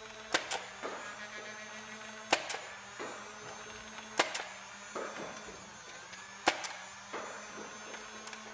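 Nerf Rayven CS-18 flywheel blaster's motors whirring steadily while it fires darts: four shots about two seconds apart, each a sharp double click.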